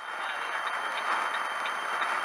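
Steady road and engine noise inside a vehicle's cab while it drives at highway speed, with faint light ticks a few times a second.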